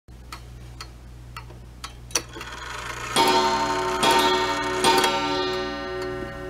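Intro music sting: light clock-like ticking, about two ticks a second, then about three seconds in a loud sustained ringing chord comes in and is struck twice more.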